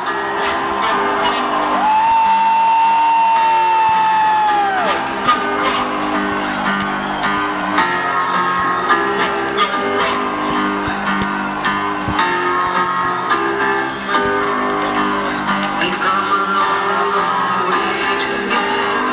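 Loud electronic dance music from a live DJ set playing over an arena sound system. About two seconds in, a bright high note is held for roughly three seconds, then slides downward.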